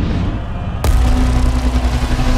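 Trailer sound design: a deep low rumble, then a sudden loud hit just under a second in that opens into a sustained droning tone with a hiss over it.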